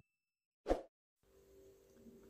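A single short pop sound effect, about two-thirds of a second in, amid near silence.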